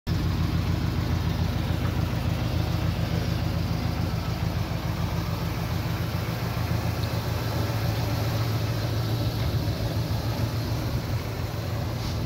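1972 Chevrolet Impala's engine idling steadily.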